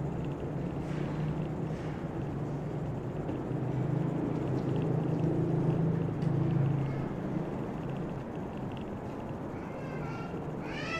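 A low, steady mechanical hum that swells through the middle and then eases off. A high-pitched animal call starts right at the end.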